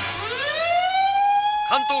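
Police car siren winding up: its pitch rises over about a second, then holds as one steady tone. A radio dispatcher's voice starts over it near the end.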